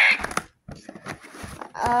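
A few faint taps and scrapes as a cardboard toy box and its packaging are handled and pried at.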